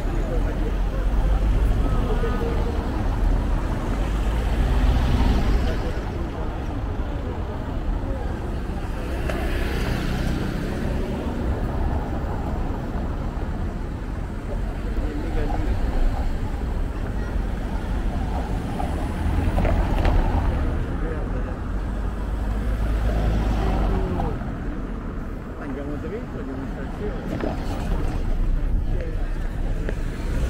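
Street traffic: cars driving over cobblestones, with several passing one after another over a steady low rumble. People's voices can be heard in the street.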